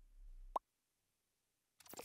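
Logo-animation sound effects: a short blip that slides upward in pitch and stops abruptly about half a second in, then silence, then a brief crackle of clicks as the logo appears near the end.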